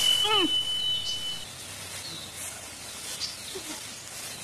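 A woman's short vocal cry, falling in pitch, near the start, over a steady high beep-like tone that lasts about a second and a half. After that only a low hiss.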